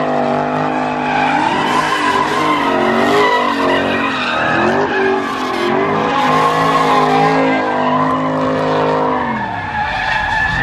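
Car engine revving hard while the car spins donuts, its tires squealing continuously on the pavement. The revs rise and fall over and over, then drop away near the end.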